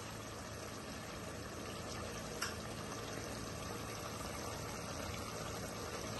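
Tomato masala simmering in a kadai over a low flame: a faint, steady bubbling, with a single small click about two and a half seconds in.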